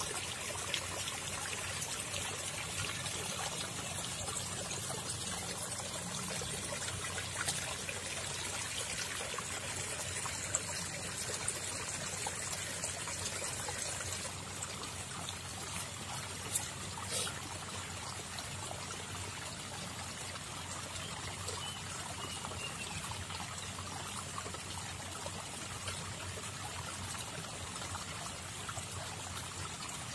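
Shallow water trickling and pouring over mud and stones in a small runoff channel, a steady splashing that drops slightly in level about halfway through.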